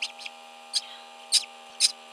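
Duckling peeping during hatching: five short, high-pitched peeps in quick, uneven succession over a faint steady incubator hum.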